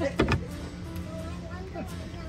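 A couple of light knocks as black decor letters, likely wood, are picked up and handled on a table, then faint voices in the background over a low steady hum.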